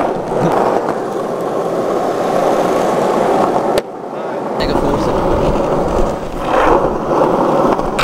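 Skateboard wheels rolling over rough asphalt, a steady rolling noise that drops out abruptly a little under four seconds in and then picks up again, heavier.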